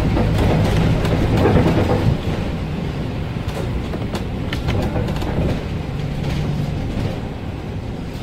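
Inside a Volvo 7000A articulated city bus under way: engine and drivetrain running with tyre noise on a wet road and scattered light rattles and clicks from the cabin. The sound eases about two seconds in and again near the end as the bus slows.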